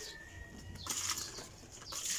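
Water poured from a plastic dipper splashing onto the leaves and soil of potted plants, in two short splashes about a second in and at the end.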